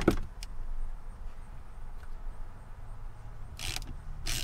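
A few light metallic clicks as a hand socket is seated on a nut of a dash mount, then only a steady low hum.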